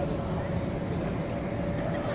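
Exhibition-hall background: a steady hum with one faint constant tone, and a low murmur of distant voices.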